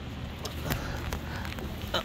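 Low steady background hum with a few faint clicks.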